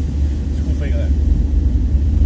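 Steady low rumble of a van's engine and road noise, heard from inside the cabin while driving.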